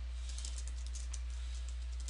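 Computer keyboard typing: a quick, uneven run of key clicks over a steady low electrical hum.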